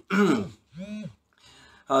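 A man clearing his throat between phrases: a short voiced sound falling in pitch, then a quieter brief hum that rises and falls about a second in.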